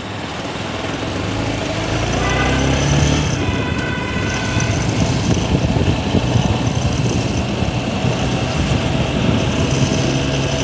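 Motorcycle pulling away and riding along a road. Engine and wind noise grow louder over the first three seconds, then stay steady and loud.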